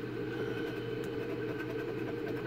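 A coin rubbing the scratch-off coating off a lottery ticket in faint short strokes, over a steady low hum.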